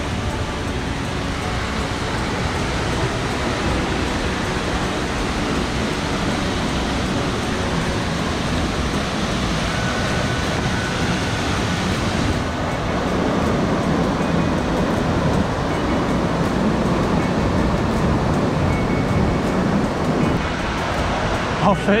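Steady rushing noise of a tall waterfall plunging onto rocks close by, growing a little louder over the first few seconds.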